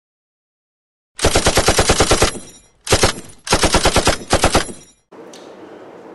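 Four bursts of automatic gunfire, about ten shots a second, starting about a second in. The first burst is the longest, and short gaps separate the rest. A faint steady room hum follows near the end.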